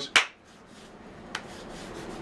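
A short, sharp rubbing brush at the start, then a quiet stretch of room hiss with a single faint tick a little past the middle.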